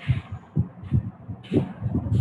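Muffled, indistinct speech in short irregular bursts, with dull low thumps on each syllable.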